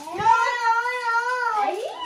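A young child's single long whining cry, held on one high pitch and sliding down near the end.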